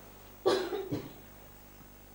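A man coughing about half a second in: one cough followed by a shorter second one right after it.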